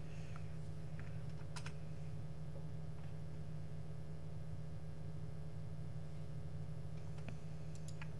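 A few faint, scattered computer keyboard clicks over a steady low hum.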